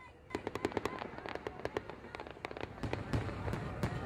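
Fireworks: a dense run of sharp crackling pops and bangs over a low rumble, getting louder toward the end, with a brief whistle at the start.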